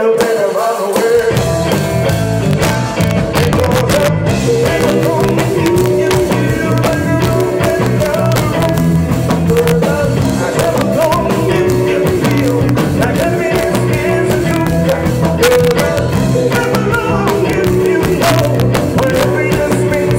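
Live band playing loud amplified music, electric guitar over drums and congas keeping a steady beat.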